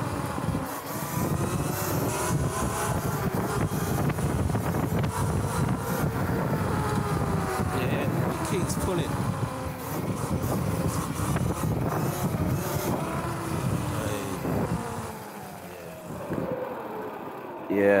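Sotion aftermarket hub-style motor on a Surron electric dirt bike whining under hard acceleration, run at 600 phase amps, its pitch rising and falling with speed over wind and tyre noise. The whine drops lower and quieter about three seconds before the end.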